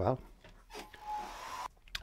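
Hand-held electric dryer blowing on wet acrylic paint to dry it: a short spell of airy hiss with a faint, slightly rising motor whine, starting about a second in and cutting off suddenly.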